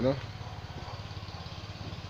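A low, steady rumble, like a motor running somewhere nearby, left on its own after a spoken word ends at the very start.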